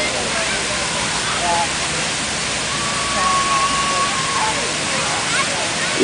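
Many tall water jets of the Unisphere fountain spraying and falling back into the pool: a steady rushing hiss of water, with faint voices behind it.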